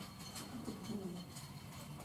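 Quiet classroom room tone with a faint murmur of a voice near the middle and a few light clicks.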